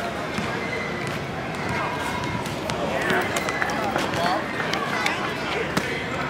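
Outdoor city ambience with distant, indistinct voices and a few sharp short knocks, the clearest near the end.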